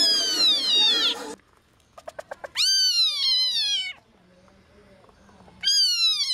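Young African civet calling repeatedly, each call a long, high-pitched cry that falls in pitch. A quick run of ticks comes just before the second call, and background music cuts off about a second in.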